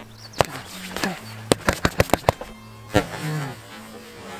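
Hand strikes landing on a freestanding punching dummy: two hits about half a second in, then a fast run of about seven chain punches in under a second, and one more hit near the three-second mark.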